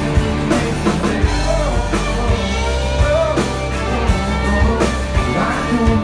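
Live band playing a country-pop song through a PA, with electric guitar and drum kit.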